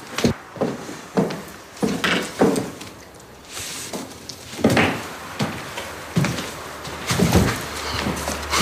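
A door being opened, followed by a series of separate knocks and thuds spread over several seconds.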